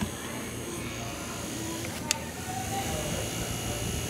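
Small handheld battery fan running close to the microphone, a steady whir with a low hum, while faint voices carry in the background. A single sharp click comes about two seconds in.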